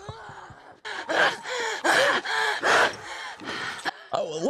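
A woman's strained gasps and grunts, about four loud, heaving breaths in quick succession, from a film's soundtrack.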